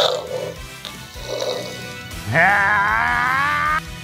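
A cough, then a long, loud cry in a person's voice that slowly rises in pitch, starting a little after two seconds in and cutting off near the end, over background music.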